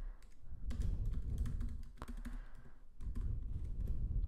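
Typing on a computer keyboard: an irregular run of key clicks and soft key thumps.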